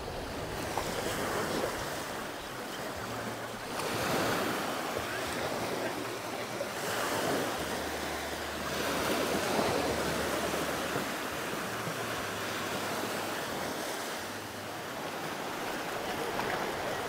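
Small sea waves breaking and washing up on a sandy shore and around rocks, the surf swelling and easing every few seconds.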